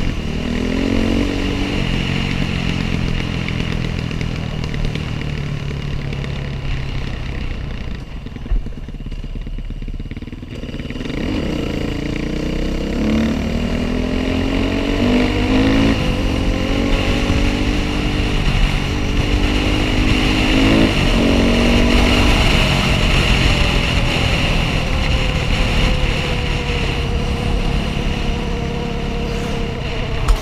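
Dirt bike engine heard from the rider's own helmet camera: it runs at low revs for a few seconds and then accelerates through several gear changes. Each change makes the revs climb and then drop suddenly, before the engine settles into a steady cruise. There is a single brief knock about eight seconds in.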